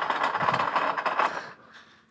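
Mechanical rattling from a prop lie-detector machine, a dense run of fine ticks like a chart printer running. It fades out about one and a half seconds in.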